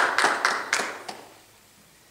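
A small audience applauding, the claps thinning out and dying away after about a second.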